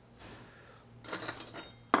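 Tableware being handled: a brief cluster of light clinks from dishes and cutlery about a second in, and one sharp click near the end.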